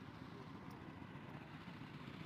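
Faint, steady low rumble of outdoor background noise, with no distinct sound standing out.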